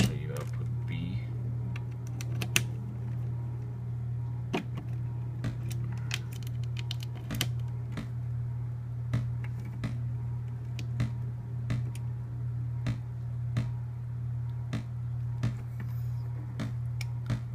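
Eurorack modular synth playing a gate pattern from a Zorlon Cannon sequencer as sharp, unevenly spaced clicks, a few a second, over a steady low hum. The gates drive no drum modules, so the pattern comes through as bare clicks.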